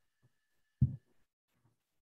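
A single short, low thump about a second in, over a faint thin steady high tone that stops soon after.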